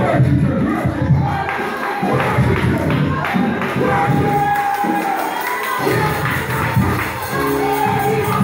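Live church praise music with the congregation shouting and cheering over it, and one long held note about four seconds in.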